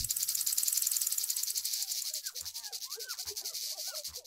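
Crickets chirping in a rapid, high pulsing trill, joined after about a second and a half by small rising-and-falling chirps, the whole slowly fading.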